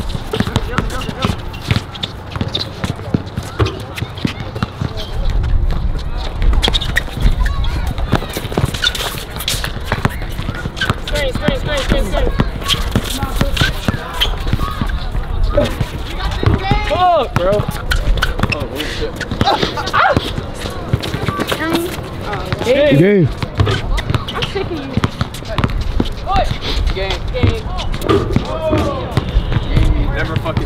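Pickup basketball on an outdoor court: a basketball bouncing off the court surface again and again, with players' shoes on the court and voices calling out through the play.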